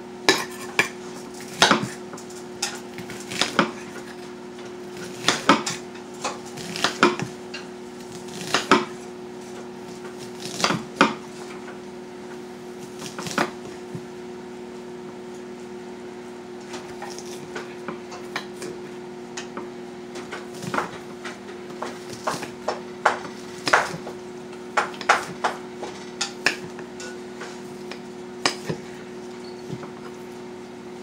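Stirring food in a pot on the stove: a utensil knocks and scrapes against the pot in irregular clanks, thinning out midway and picking up again later. A steady low hum runs underneath.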